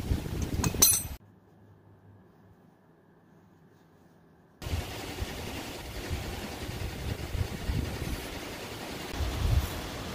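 Wind on the microphone and a few metal clinks, then about three seconds of near silence, then a steady hiss of an air chuck filling a truck tyre with compressed air.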